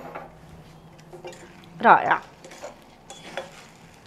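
Scattered light clinks and knocks of kitchen dishes and utensils on a countertop and a metal saucepan, with one short spoken word about halfway through.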